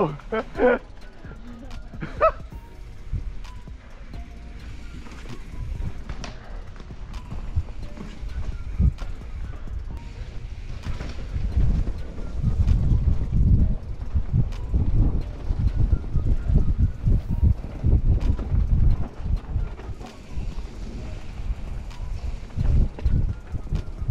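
Mountain bike ridden fast down a rough dirt singletrack: tyre and suspension rumble with rattling knocks from the bike, and wind buffeting on the rider-mounted action camera's microphone. It grows heavier from about ten seconds in.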